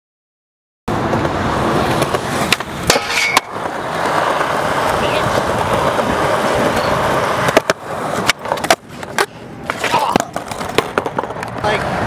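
Skateboard wheels rolling on the concrete of an outdoor skatepark, starting about a second in, with several sharp clacks of the board striking the ground, mostly in the second half.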